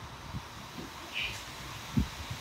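Quiet outdoor ambience with a low wind rumble on the microphone and a few soft knocks from cardboard cereal boxes being handled, ending in a short low thump.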